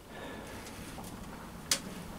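A pause in talk: faint, even background noise with one short click near the end.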